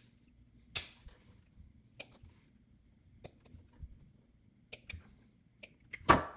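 Wire strippers snipping and stripping 18-gauge solid copper wire to make short jumpers: about six sharp clicks, spread a second or so apart, two of them close together near the end.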